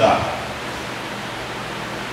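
A man's voice finishing a word, then a steady, even hiss of background noise with no other events.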